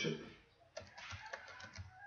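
Faint computer keyboard keystrokes: a few short, soft clicks starting about a second in.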